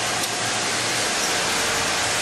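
Steady noisy din of a garment factory floor with sewing machinery running, with a faint steady whine underneath.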